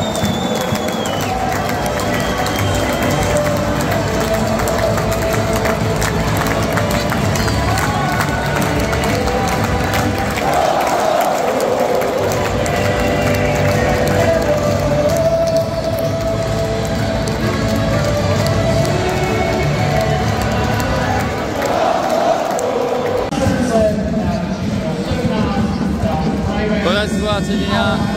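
Ice hockey arena crowd cheering and chanting loudly and steadily through a goal celebration, with goal music over the arena speakers.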